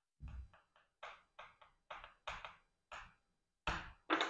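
Chalk writing on a chalkboard: a quick, quiet series of short taps and scrapes, about a dozen strokes, with a firmer tap near the end.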